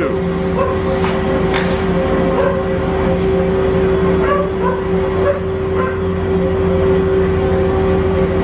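Gondola station drive machinery running with a steady hum and a constant mid-pitched tone under it, with a few faint clicks over the top.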